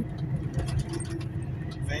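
Steady low rumble of a truck's engine and tyres heard inside the cab while cruising on a motorway, with a faint steady hum and a few light ticks.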